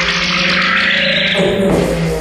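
Abstract electronic music from a modular synthesizer: a loud wash of hissing noise over a low droning hum, with the texture shifting about three-quarters of the way through.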